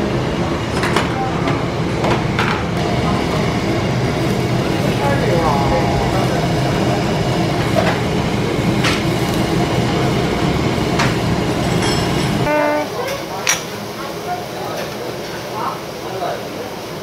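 Pork skirt meat sizzling on a charcoal tabletop grill under a steady low rumble, with metal tongs clicking against the grate as the pieces are turned. The rumble stops suddenly about twelve seconds in, leaving a quieter room.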